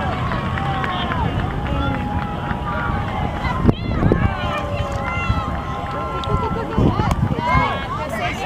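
Distant, drawn-out calls and shouts of players and spectators at an outdoor youth soccer game, over a steady low rumble of wind on the microphone. A single knock comes just under four seconds in.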